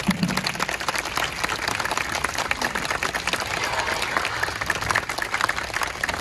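Large crowd applauding with dense, steady clapping. The last held brass chord of the wind band dies away just as the clapping begins.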